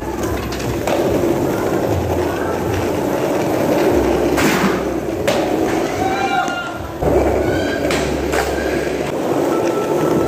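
Skateboard wheels rolling on smooth concrete with a steady rumble, broken by several sharp clacks of a board striking the ground.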